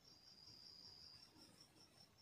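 Near silence, with a faint high-pitched, rapidly pulsing trill typical of a cricket.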